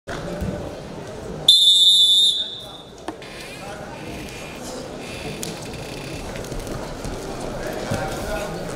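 A referee's whistle blown once, a short, loud, steady high blast of about a second, signalling the start of a freestyle wrestling bout. It sounds over the murmur of a crowd in a large hall.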